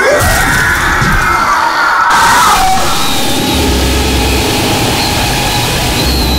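A drawn-out scream that sweeps up sharply at the start, holds high and wavering for about two and a half seconds, then drops away, over loud noise and music.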